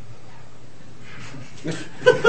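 Steady room tone of a lecture room with a low hum, and faint voices or laughter from the audience starting near the end.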